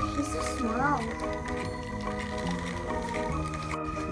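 Cheerful background music with steady held notes changing every second or so.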